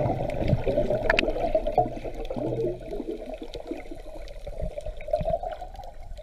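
Water sloshing and gurgling, heard muffled through an underwater camera housing, with scattered small clicks. It is louder for the first half and quieter after.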